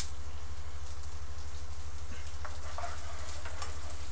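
Buttery spread melting and sizzling in a skillet over a gas burner: a faint, steady hiss over a constant low hum, with a few light ticks midway.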